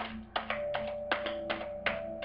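Tarot cards being shuffled by hand, a quick series of crisp slaps and clicks about three a second, over soft background music with held notes.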